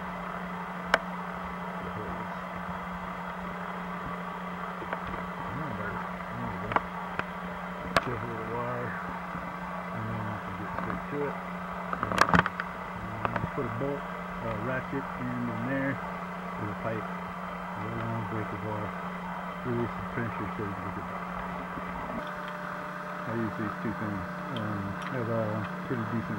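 Muffled talking, dulled by a taped-over microphone, over a steady low hum. A few sharp clicks and knocks stand out, the loudest cluster about twelve seconds in.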